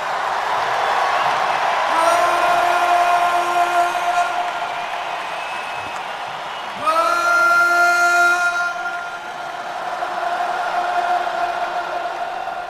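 Huge stadium crowd cheering at a rock concert, with long held sung notes over it: one begins about two seconds in and a second slides up into pitch about seven seconds in, each held for a few seconds.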